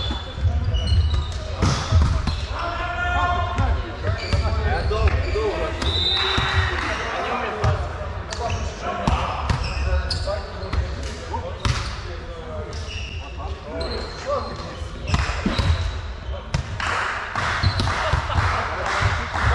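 Volleyballs being struck and bouncing during warm-up passing: irregular sharp slaps of hands and forearms on the ball and balls hitting the wooden hall floor, with several players' voices talking in the background.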